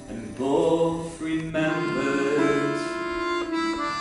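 Piano accordion playing sustained chords with a strummed acoustic guitar in a folk song's short instrumental passage; the chords change several times.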